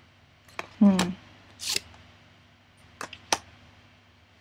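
Oracle cards being drawn from the deck and laid onto the table: a brief papery swish near the middle and two light taps just after three seconds in. A short voiced murmur comes about a second in.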